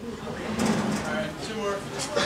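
Indistinct voices of several people talking at once, with some light knocks and scraping mixed in.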